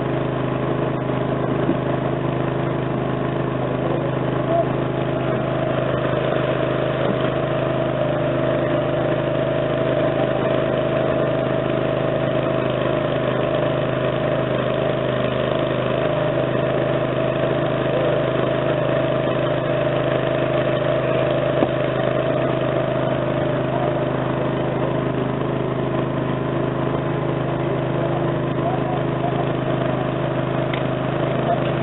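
An engine running steadily at one constant speed, an unchanging hum, with a single sharp knock about two-thirds of the way through.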